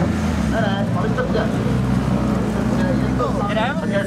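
Ford Focus RS WRC rally car's turbocharged four-cylinder engine idling with a steady low hum, with people talking around it.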